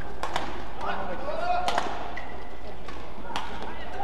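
Badminton rally: sharp shuttlecock hits off racket strings, four or so spaced irregularly, with a shoe squeak on the court floor between them. Hall background noise runs under it.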